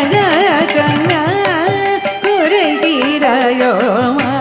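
Carnatic classical music: a woman singing a varnam in Charukesi raga, her line sweeping through quick ornamental pitch oscillations (gamakas). Short percussion strokes keep time beneath the melody.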